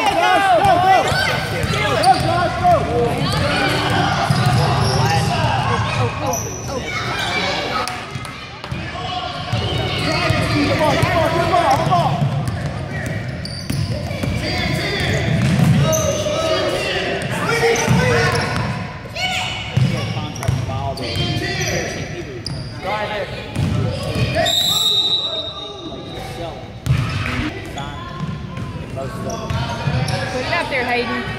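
A youth basketball game in a gym: a basketball bouncing on the hardwood court and players running, under a steady background of spectators' and players' voices, echoing in the large hall. A short high whistle sounds about two-thirds of the way through.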